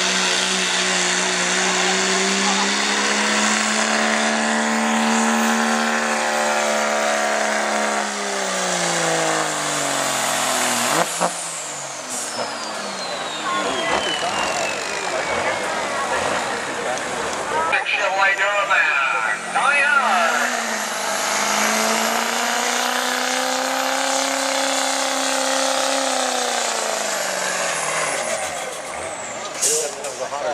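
Dodge Ram's Cummins turbo-diesel pulling hard under load, its engine note holding, then dropping and cutting off about ten seconds in. A high turbo whistle follows, falling steadily in pitch over several seconds as the turbo spools down. In the second half, a Chevrolet Duramax diesel truck's engine rises and holds under load, then falls away near the end.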